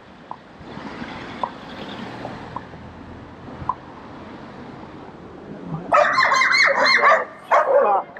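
A dog barking in a loud, rapid run from about six seconds in, after a stretch of quiet street background with a few faint clicks.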